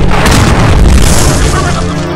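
Electric-shock sound effect: a loud, continuous crackling buzz with a deep rumble and a low hum under it, easing off near the end.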